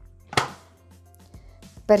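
A single sharp click about half a second in as the plastic lid of a Bimby (Thermomix) TM6 is pressed down onto its steel mixing bowl, over faint background music.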